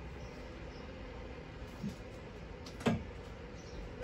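Quiet room with a faint steady hum and two small knocks, the second sharper, about three seconds in.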